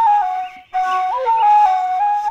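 Siwan four-hole end-blown flute, made from a length of metal pipe, playing a stepwise melody. It breaks off briefly for a breath about half a second in, then goes on.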